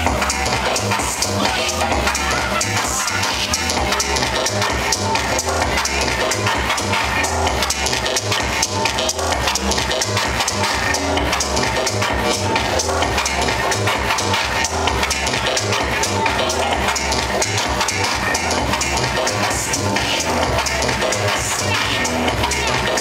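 Electronic dance music from a live DJ set, loud and continuous, with a steady, bass-heavy beat.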